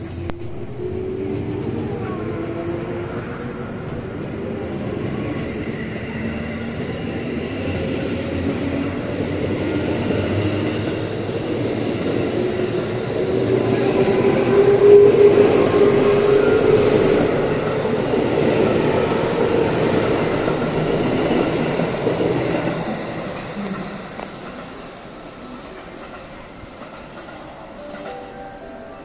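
JR West 221 series electric train running out past the platform, its traction-motor whine rising in pitch as it gathers speed over wheel and rail noise. It is loudest about halfway through, then fades as the last cars draw away.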